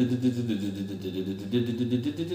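Electric guitar played with a pick: a steady, even run of single notes on the open strings, picked several times on each string before moving to the next, as a picking exercise across the strings.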